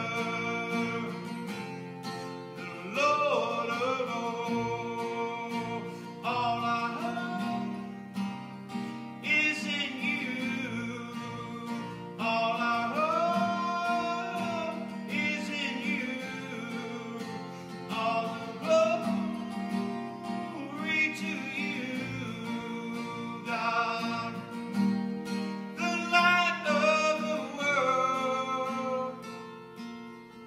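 A man singing a praise and worship song in phrases, accompanying himself on acoustic guitar.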